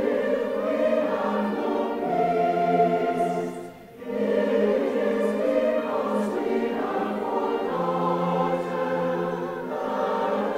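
Large choir singing sustained chords with orchestral accompaniment, in phrases with a brief break about four seconds in.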